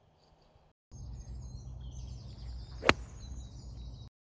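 A single sharp click of a seven iron striking a golf ball cleanly, ball then turf, about three seconds in; the shot is called "bang on". Birds chirp and a low steady rumble runs behind it.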